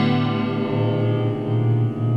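Electric guitar chord ringing on through a Caline Mariana modulated reverb pedal, with a slow wavering chorus-like shimmer in the sustain.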